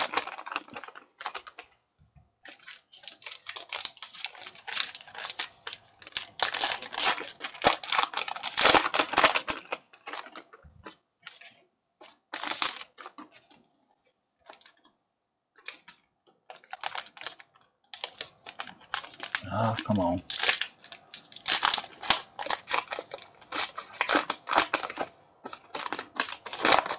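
Paper wrappers of Topps Heritage baseball card packs crinkling and tearing as they are peeled open, with the cards inside rustling, in quick crackly runs. The crackling thins out to a few scattered rustles for several seconds in the middle, then picks up again.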